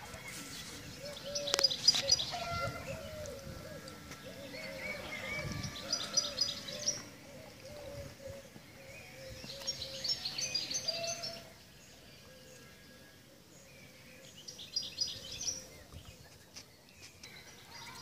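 Wild songbirds singing: a short, high song phrase comes four times, several seconds apart. Under the first two-thirds of it runs a lower warbling sound, which then stops, leaving only the bird phrases.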